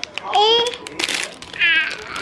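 A toddler makes two short, high-pitched wordless vocal sounds, one just after the start and one near the end.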